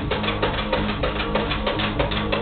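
A russet potato being cut on a French mandoline: a quick, even run of clicks, about seven a second, as it is worked against the blade.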